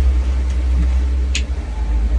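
A steady low rumble from the boat underway, with a sharp finger snap about one and a half seconds in and a fainter click earlier.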